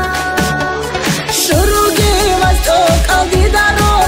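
Dagestani pop song with an ornamented, wavering melody line over a synthesised backing; a noise sweep swells about a second and a half in, after which a deep bass drum comes in, hitting two to three times a second.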